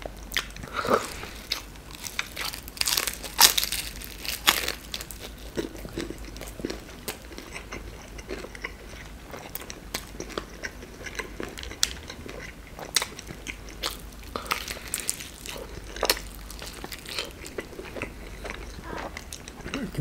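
Close-up biting and chewing of a crisp deep-fried chebureki with beef filling. Irregular crunchy crackles of the fried crust come through with soft, wet mouth sounds.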